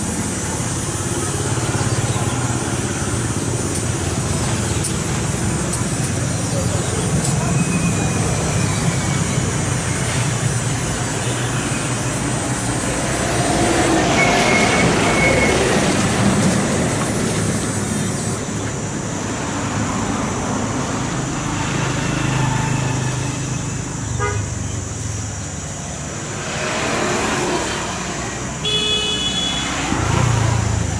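Steady background road-traffic noise, with a brief horn toot about halfway through and another near the end.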